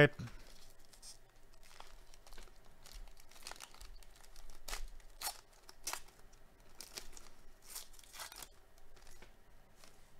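Foil wrapper of a baseball-card pack being torn open and crinkled by hand: irregular crackles and rustles, with a few louder tears in the second half.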